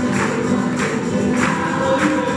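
A tuna ensemble of men and women singing together in chorus to strummed guitars and other plucked strings, with a strong beat about every 0.6 s.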